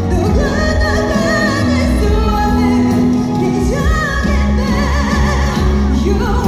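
A female vocalist singing a ballad live with full band accompaniment through a loud concert PA, held notes wavering with vibrato.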